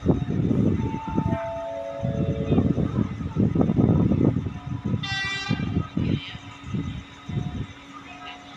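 An approaching diesel-hauled passenger train's horn sounds one short blast about five seconds in, over a low, uneven rumble. Near the start, a short series of tones steps down in pitch.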